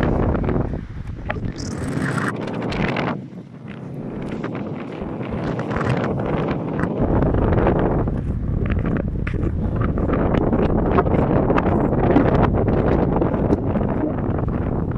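Strong wind buffeting the microphone. It drops off for a moment about three seconds in, then builds back up and keeps blowing.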